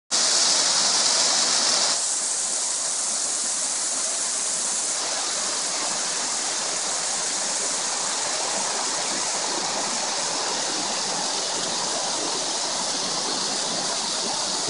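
Steady rushing of a waterfall, slightly louder for the first two seconds and then even.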